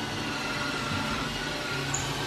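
Ryobi cordless drill running steadily as it bores a hole through a wooden cabinet door for a handle, with background music underneath.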